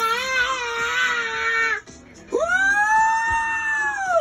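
A high voice singing two long, drawn-out notes with a short break between them. The second note is higher and slides down at its end.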